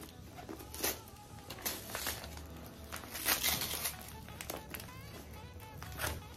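Packaging of a parcel being handled and cut open with scissors: several short bursts of crinkling and rustling.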